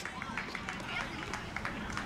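Faint background chatter of youth baseball players and spectators, with a few short taps scattered through it.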